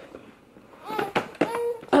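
A toddler makes a few short, high-pitched vocal sounds starting about a second in, mixed with a few light clicks.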